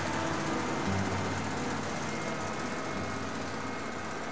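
Bulldozer running: a steady engine and machinery noise that cuts in suddenly.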